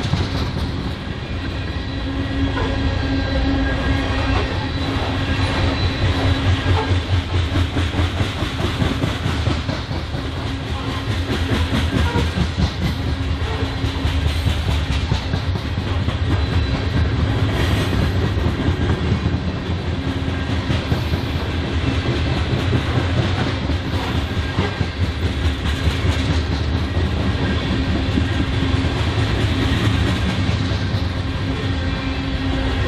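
Freight train of covered grain hopper cars rolling past: a steady rumble of steel wheels on rail with rapid, continuous clicking as wheelsets pass over the track, and a steady low hum underneath.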